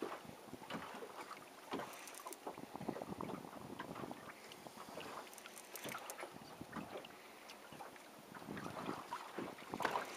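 Choppy sea water lapping and splashing irregularly against the hull of a small boat, with some wind on the microphone.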